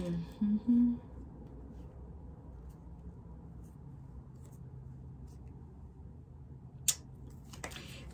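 Quiet room with two or three short murmured hums from a woman in the first second, then a faint steady low hum and a single sharp click near the end.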